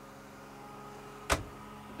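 A boat's head-compartment door being shut, one sharp knock a little past halfway, over a faint steady hum.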